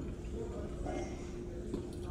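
Quiet room tone: a low rumble with a faint steady hum running through it.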